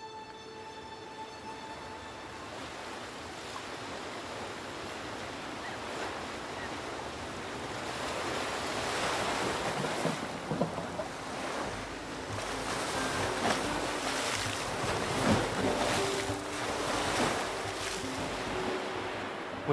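Sea surf washing and breaking against shore rocks, growing louder through the first half and then surging and receding irregularly. A held music note fades out in the first two seconds.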